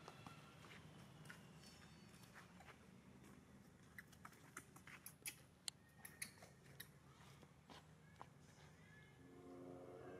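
Near silence: faint steady background hum with a scatter of short, sharp clicks, most of them bunched between about four and seven seconds in.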